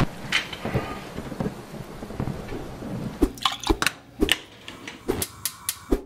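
Rain falling during a thunderstorm: a steady hiss, with several sharp cracks in the second half.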